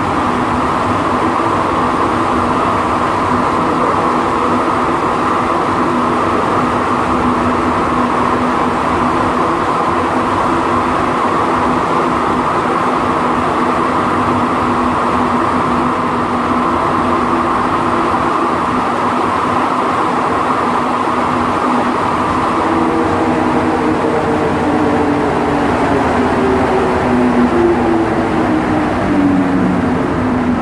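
Montreal metro Azur (MPM-10) rubber-tyred train running at speed, heard from inside the car as a steady loud rumble with a steady hum. In the last several seconds a whine from the traction motors falls steadily in pitch as the train brakes into a station.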